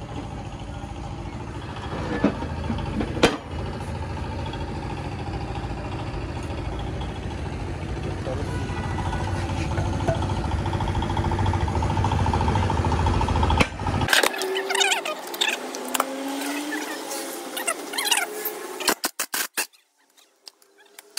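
A steady low machine rumble, slowly growing louder, with a few sharp metal knocks. About two-thirds of the way through the rumble cuts off suddenly, and sharp clicks and short squeaks follow.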